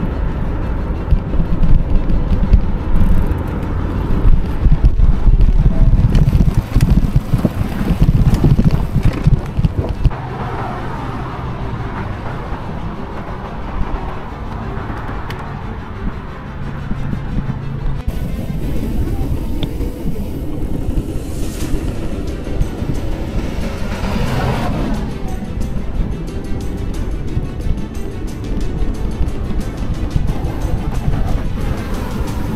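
Low rumble of wind and road noise from a moving bicycle, loudest in the first ten seconds, under background music. A couple of vehicles pass about two-thirds of the way in.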